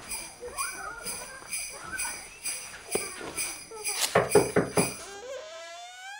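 Sleigh bells jingling in a steady rhythm, about four shakes a second. Between about four and five seconds in comes a short run of loud buzzy pulses, and in the last second a rising tone.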